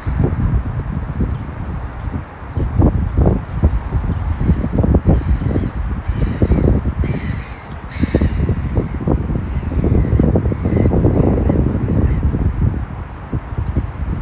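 Wind buffeting the microphone in uneven gusts, with a few short bird calls about halfway through.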